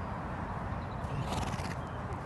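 A horse walking on grass under a rider, its footfalls soft against a steady low rumble, with a short breathy hiss about a second in.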